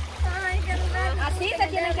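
Women's voices, one of them singing a repeated phrase with long, sliding notes, while others chatter; river water runs faintly underneath.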